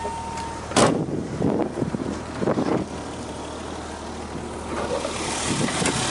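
A steady electronic warning tone from the car cuts off as the driver's door is shut with a sharp thud about a second in. The BMW straight-six then idles steadily under a few softer knocks of handling.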